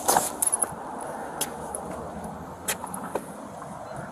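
Close rustling and a few sharp, separate clicks, like things being handled right at a body-worn camera, over a steady outdoor background hum. The clicks cluster in the first second, then come singly about once a second.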